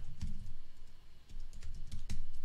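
Typing on a computer keyboard: a run of quick key clicks, with a short pause a little past the middle.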